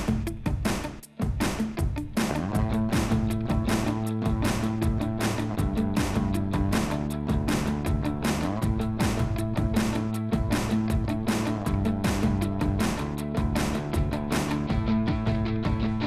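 Background rock music with a steady drum beat. Sustained guitar chords join about two seconds in.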